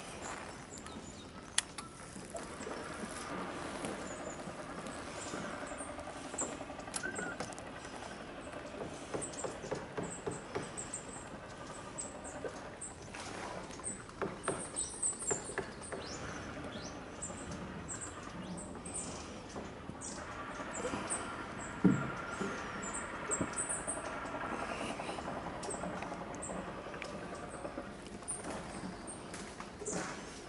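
Quiet outdoor ambience on a small fishing boat: a faint steady hum, scattered light clicks and taps, and short high chirps, with one louder knock about two-thirds of the way through.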